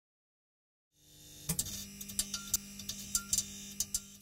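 Sound effect under the closing logo: a steady low electrical hum fades in about a second in, with irregular sharp crackling clicks over it, like a neon sign buzzing and flickering.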